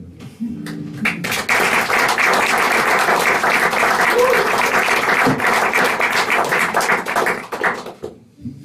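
Audience applauding: a dense patter of clapping that starts about a second in, holds steady, and dies away near the end.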